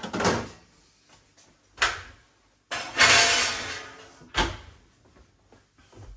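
Kitchen handling clatter: a sharp knock about two seconds in, a longer scraping rustle that fades over about a second and a half, then another sharp knock.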